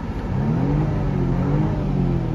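2016 BMW engine revved while parked, heard from inside the cabin: the revs climb steadily for about a second and a half to near redline, then start to fall near the end. A quiet engine note.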